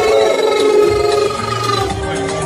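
Live music played loud through a PA, holding long sustained notes. A low bass note comes in about one and a half seconds in.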